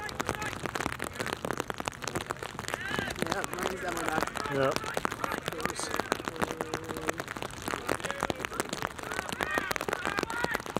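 Rain falling on the plastic covering the camera, a dense run of small ticks throughout, with scattered shouts and calls from players on the pitch.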